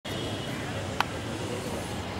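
Steady outdoor background noise with a low hum, broken once by a short sharp click about a second in.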